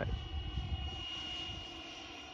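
The electric ducted-fan motor of a radio-controlled HSD L-39 model jet, heard from the ground as a steady high whine while the model flies a landing approach at low throttle. A low rumbling noise lies underneath.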